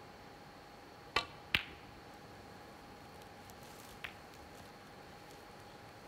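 Snooker shot: the cue tip strikes the cue ball, and about a third of a second later the cue ball clacks into an object ball. A fainter ball click comes a few seconds later, over a faint steady hum.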